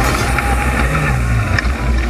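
Off-road racing buggy's engine running hard, heard from inside the cockpit, its note stepping up and down in pitch as the throttle is worked over rough dirt.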